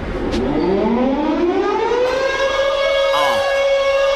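A siren rising in pitch over about two seconds, then holding a steady wail, opening a hip hop track. A brief voice-like sound cuts in about three seconds in.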